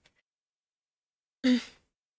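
A woman's short, breathy exhale with a brief voiced start, about one and a half seconds in, after a second and a half of near silence.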